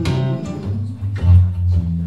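Acoustic blues played live on an acoustic guitar with a bass underneath. Picked and strummed guitar strokes sit over steady, strong low bass notes.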